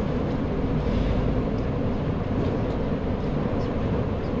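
Steady low rumble of background room noise, without any distinct events.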